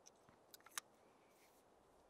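Near silence, broken by a few small clicks from a ferro rod and its striker being handled, the last and sharpest just under a second in.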